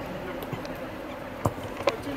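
Outdoor football-pitch background: a faint, steady hum over a low haze, with two sharp knocks, one about a second and a half in and one near the end.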